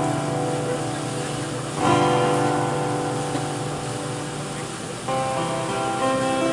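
Live country band playing an instrumental passage with acoustic guitar, upright bass and drums under sustained lead notes. The chords change about two seconds in and again about five seconds in.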